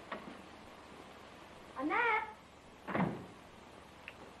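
A cat meowing twice: a call that rises and falls about two seconds in, then a shorter call that falls in pitch.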